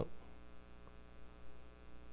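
Steady electrical mains hum, a low buzz with many evenly spaced overtones, with a brief faint sound about one and a half seconds in.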